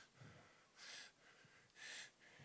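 Near silence, with two faint breaths into a close microphone, about a second in and near the end.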